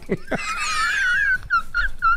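A chorus of dogs howling and whining: many high overlapping calls that slide downward together, then a few short separate yelps near the end.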